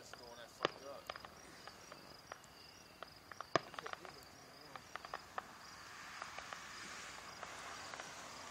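Crickets chirping in a steady, high, pulsing trill, with scattered sharp clicks and pops, the loudest about three and a half seconds in. A soft hiss swells in over the last couple of seconds.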